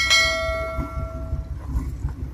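A single sharp metallic strike that rings with a bell-like tone, fading away over about a second and a half.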